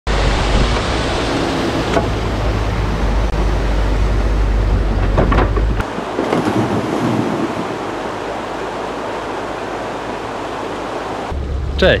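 Excavator working at a stream: a steady low rumble, then limestone rocks tipped from the bucket tumbling down into the water about six seconds in, followed by a lighter steady rush.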